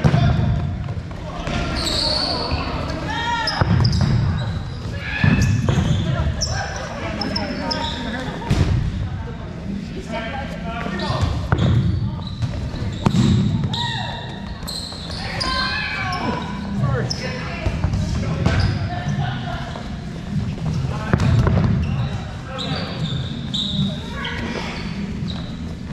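Rubber dodgeballs being thrown and bouncing off the floor, walls and players, with repeated thuds, while players shout and call out over each other in a reverberant gym hall.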